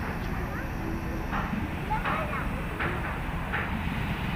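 Hand hacksaw blade sawing an iron angle bar: rasping strokes about one every three-quarters of a second, over a steady low rumble.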